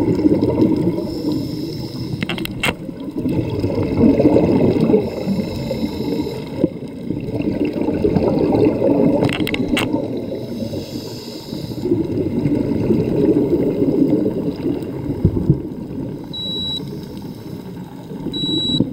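A scuba diver's breathing heard underwater through the camera housing: a hiss on each inhale from the regulator, then a bubbling rumble as the exhaled air escapes, in cycles of about four to five seconds. A short high beep comes near the end.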